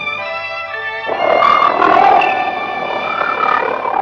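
Dramatic soundtrack music holding a chord. About a second in, a loud wavering cry that rises and falls joins it, in the manner of a monster's roar.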